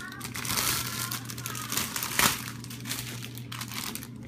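Clear plastic packaging crinkling as items are handled and lifted out of a cardboard box, with a sharp crackle about two seconds in.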